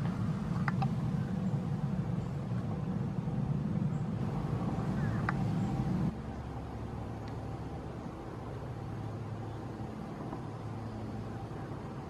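Steady low background rumble that drops clearly in level about six seconds in, with a couple of faint short high sounds over it early on and just before the drop.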